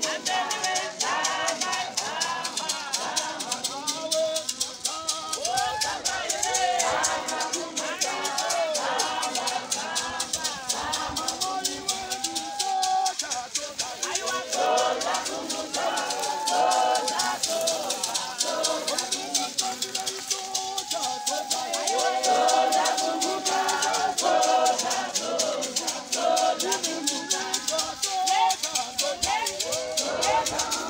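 Voices singing a church song over a steady, fast shaker rhythm from rattles.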